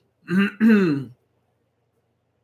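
A man clearing his throat: two short voiced bursts in quick succession, over within the first second or so.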